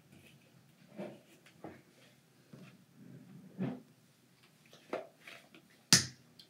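Toothpaste tube and toothbrush being handled on a counter as toothpaste is squeezed onto the brush: a few soft knocks and rustles, then a sharp click near the end, the loudest sound.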